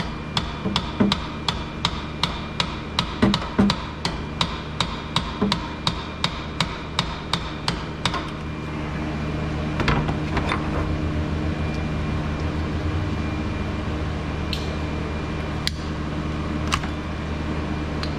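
Hammer giving the replacement alternator light taps to seat it into its mounting bracket, about three taps a second, stopping about eight seconds in. A single knock follows about ten seconds in.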